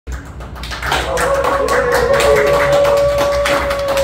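Hand clapping, with one long note from a voice held for about three seconds over it and falling away right at the end.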